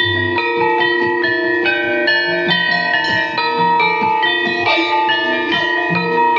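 Javanese gamelan playing: bronze-keyed metallophones struck with mallets in a steady succession of ringing notes, several pitches sounding together, with low thuds near the start.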